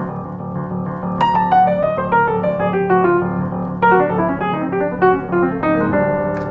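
Baldwin upright piano played in D: the left hand keeps up low D octaves underneath while the right hand improvises, with descending runs of notes about a second in and again near four seconds.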